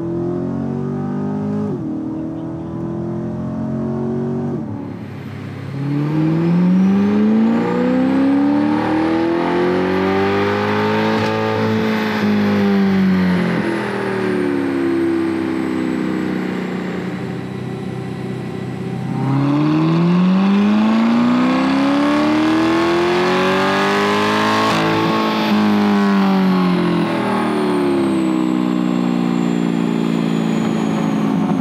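C8 Corvette's 6.2 L LT2 V8 breathing through aftermarket headers and exhaust. In the first seconds it makes a few quick upshifts under acceleration. Then it does two long wide-open-throttle dyno pulls, each climbing steadily in pitch for about six seconds before the revs fall away, with a thin high whine rising and falling with the engine speed.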